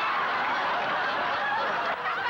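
Studio audience laughing, many voices together at a steady level.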